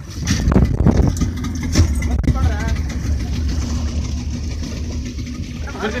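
A small motorboat's engine running with a steady low hum, while water splashes against the hull in the first two seconds.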